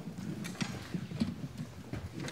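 Irregular footsteps and light knocks on a hard floor, with a faint murmur from the audience.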